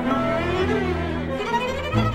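Orchestral classical music played on bowed strings, with cellos and basses holding low notes under a wavering violin melody.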